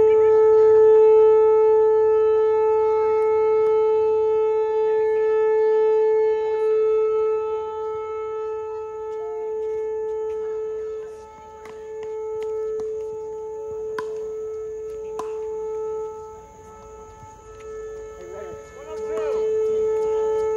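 A steady droning hum with a stack of overtones throughout, joined by a faint steady high-pitched buzz. Two sharp pickleball paddle pops sound in the middle, about a second apart.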